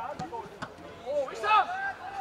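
Men's voices shouting and calling out on a football pitch, with the loudest shout about halfway through. Two short knocks come in the first second.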